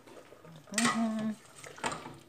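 A metal ladle knocks against a stainless steel stockpot of boiling pork broth, with one sharp clank near the end. A short voiced sound comes about a second in and is the loudest thing here.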